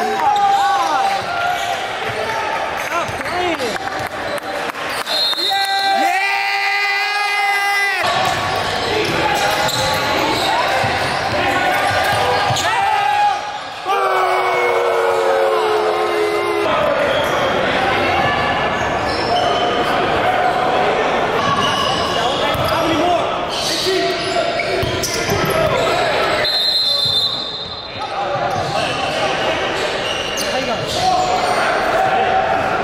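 A basketball bouncing on a hardwood gym floor during play, with voices and shouts echoing around the large hall.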